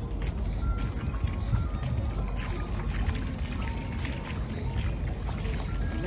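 Feet splashing and wading through shallow seawater, with scattered small splashes over a steady low rumble.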